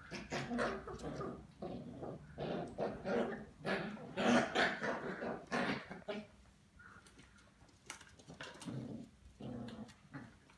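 Two small dogs play-fighting, growling in rough irregular bursts that are loudest about four to five seconds in, then die down to a few weaker bursts near the end.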